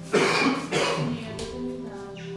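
Two loud coughs from a person close to the microphone, the first just after the start and the second about half a second later, over steady background music.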